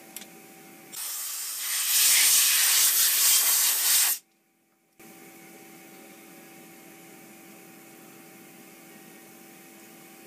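A loud hiss of compressed air blowing, starting about a second in, getting louder a second later and cutting off suddenly after about three seconds. After a short gap there is only a faint, steady electrical hum.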